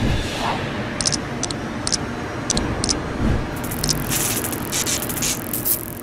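Sound-design whooshes and a low rumble for an animated logo sting, with a few short bright clicks scattered through the first half and a low thump a little past the middle. A high, bright hiss swells in the second half.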